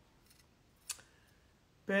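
Quiet room tone broken by one short, sharp click about a second in, with a couple of fainter ticks before it.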